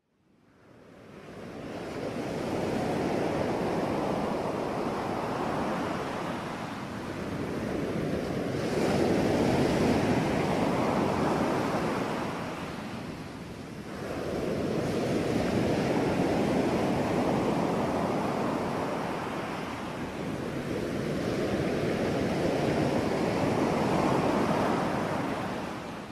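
Ocean surf: waves breaking and washing up a beach, swelling and receding about every six to seven seconds. It fades in at the start.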